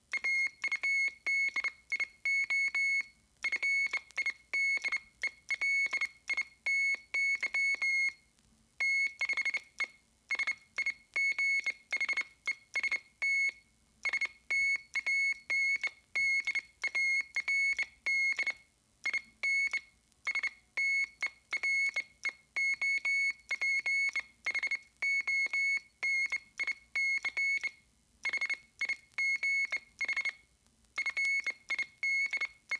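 Radio code signals: a high-pitched Morse code tone keyed on and off in short and long pulses, with a short pause between groups every few seconds.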